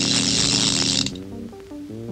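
Clockwork mechanism of an old wall clock whirring with a rapid ratcheting rattle for about a second, over held music chords. The whirr stops suddenly, and short separate music notes follow.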